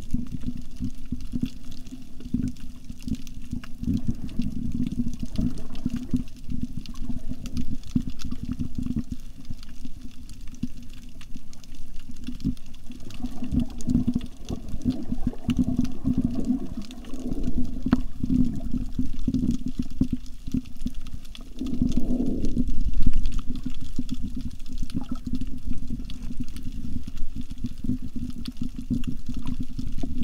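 Muffled underwater water noise picked up through a camera's underwater housing: a continuous low rumble with irregular surges, the loudest a swell about two-thirds of the way through.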